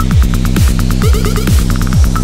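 Hard techno: a kick drum a little over twice a second, each hit a falling thud, over a steady droning, buzzing bass, with fast hi-hat ticks and a stuttering high synth figure.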